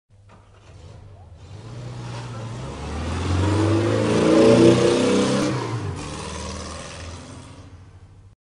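A car engine passing by: it grows louder for about four seconds, peaks a little past the middle, then fades away.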